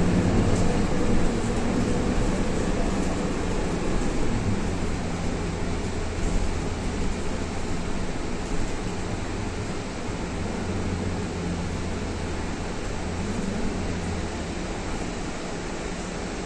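Cabin noise inside a moving city bus: a steady low engine drone with road rumble and air-conditioning hiss, the engine note shifting slightly as the bus drives on.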